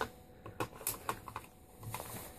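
Light, scattered clicks and scrapes of a metal magazine being rocked into the magwell of a Tippmann M4 airsoft rifle. The magazine is catching on a stiff magazine catch, which the owner blames for the hard engagement.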